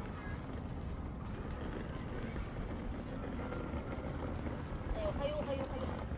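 Outdoor street ambience: a steady low rumble, with people's voices chattering about five seconds in.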